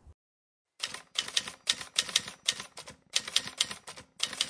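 Typewriter keystroke sound effect: a run of sharp, irregular clacks, several a second, starting about a second in.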